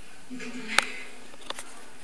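Camera being handled by hand close to the microphone: a couple of sharp clicks, the louder one just under a second in and a smaller one about a second and a half in, over a steady hiss.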